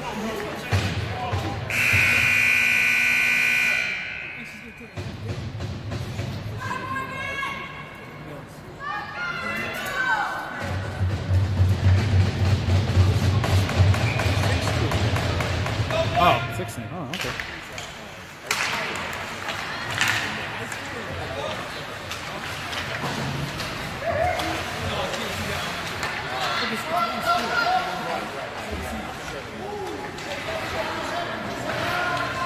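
Hockey rink sounds: a loud steady horn-like signal tone for about two seconds near the start, then voices and music, with pucks and sticks knocking against the boards and ice as play resumes.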